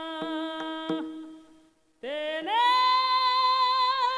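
A man singing Varkari kirtan into a microphone in long held notes over a steady drone, with a few sharp percussion strikes in the first second. The voice fades out about a second and a half in. After a short silence, a new long note swells in, louder, and is held.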